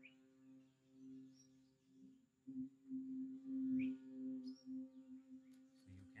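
Monochord drone: a steady low tone with a stack of overtones that swells and fades, loudest about four seconds in. A few short bird chirps sound above it.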